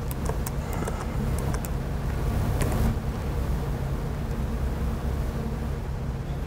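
Steady low hum of room and equipment noise, with a scatter of sharp laptop key clicks in the first three seconds.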